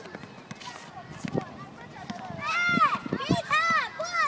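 Children's high-pitched shouting calls, loud and rising and falling in pitch, starting a little past halfway, over faint background chatter and a few short thuds.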